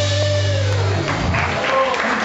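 Live rock band's final chord ringing out, with bass guitar and keyboards holding a low note that cuts off about a second in. The crowd's applause and cheering rise after it, with a whistle or two.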